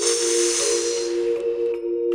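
A long snake-like hiss that fades out about one and a half seconds in, over background music holding two steady notes.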